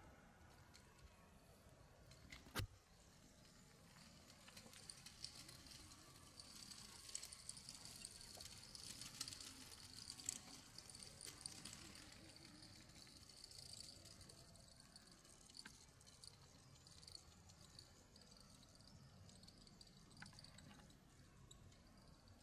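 Near silence: faint outdoor background with a soft high-pitched hiss that swells and fades in the middle, and one sharp click a few seconds in.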